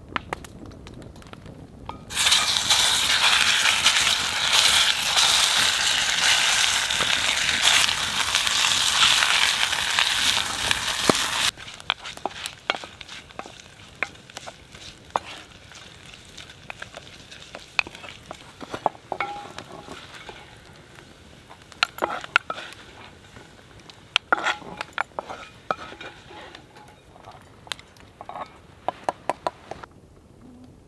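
Ground Italian sausage frying in a hot, oiled cast-iron Dutch oven. A loud sizzle starts suddenly about two seconds in and stops abruptly a little before halfway. After that the frying is quieter, with a wooden spatula scraping and clicking against the pot as the meat is stirred.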